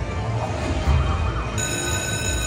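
Video slot machine's game sounds during a bonus-round spin: electronic music over a low beat with short gliding blips, then a bright chord of several steady high tones that starts about one and a half seconds in.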